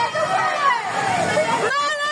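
Several people shouting over the steady rush of floodwater; near the end one voice rises into a long, held shout.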